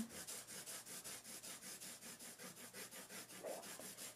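Oil/wax colored pencil scribbling back and forth on paper, a soft scratchy rubbing in quick even strokes, about six a second, as a strip of red is laid down.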